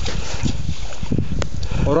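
Thin lake ice crunching and cracking under a man's hands and knees as he crawls across it, with a few sharp cracks over a steady low rumble. A man's voice starts near the end.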